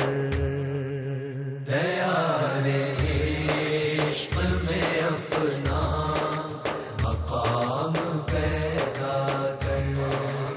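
A group of male voices chanting a devotional naat in long held notes over a steady drum beat about once a second.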